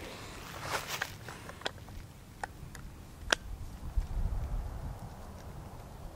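Quiet outdoor ambience with a low, faint rumble and a few scattered faint clicks and rustles.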